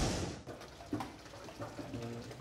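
A whoosh sound effect from an edit transition, fading out in the first half second. After it there are only faint, brief kitchen noises.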